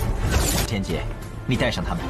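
Soundtrack of an animated fantasy series: music with a dense, crackling sound-effects burst in the first half-second or so as glowing rings of light flare, then a voice speaking in the second half.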